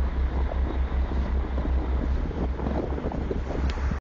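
Wind buffeting the microphone on board a moving ferry, a heavy fluctuating rumble, over the steady noise of the ferry under way through the water.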